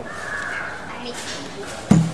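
A brief harsh call in the first half second, then a single loud thump near the end as hands come down on the soft clay idol against the tabletop.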